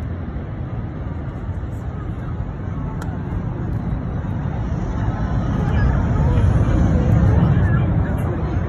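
Low rumble of a C-17 Globemaster's four turbofan engines, growing louder toward the end as the aircraft approaches, with a crowd chattering.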